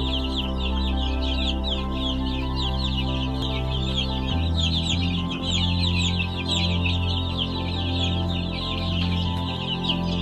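A flock of baby chicks peeping continuously, many short, high chirps falling quickly in pitch and overlapping one another, over low sustained background music.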